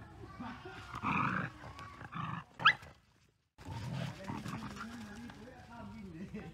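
Two dogs play-fighting, growling at each other in rough bursts, with one short, sharp, rising yelp a little before the middle. The sound drops out for about half a second just after the yelp.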